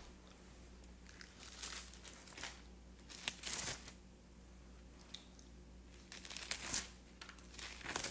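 Thin Bible pages being turned by hand, several separate, irregular paper rustles and crinkles.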